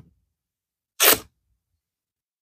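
One brief rustle of a cotton fabric strip being handled, about a second in.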